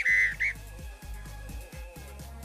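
A loud whistled tune ends about half a second in. Quieter background music with a steady low beat carries on after it.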